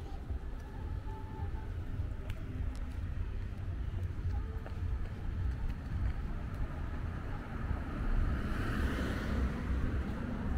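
Street traffic noise: a steady low rumble, with a vehicle passing on the road that swells to its loudest about nine seconds in and then fades.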